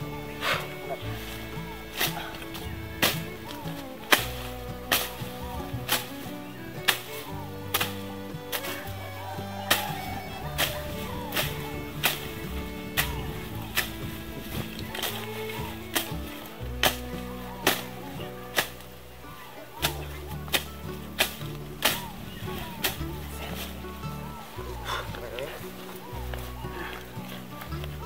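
Machete strokes chopping through leafy brush and stems, a sharp hit every second or so, over background music.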